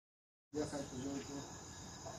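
Silence for the first half second, then a faint, steady, high-pitched chorus of crickets chirping, with faint voices in the background just after it starts.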